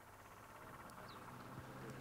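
Faint outdoor street ambience fading up, with a brief faint bird chirp about a second in and a low engine hum that grows louder near the end.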